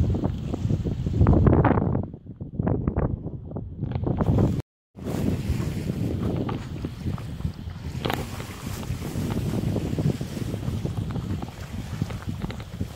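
Wind buffeting the microphone in gusts, strongest at first. The sound cuts out completely for about half a second a little before halfway, then the wind noise carries on more steadily.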